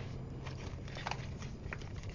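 Faint scattered ticks and crackles of paper craft pieces and a sheet of foam pop dots being handled, over a low steady hum.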